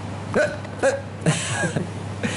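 A man laughing in three short bursts, the last one longer.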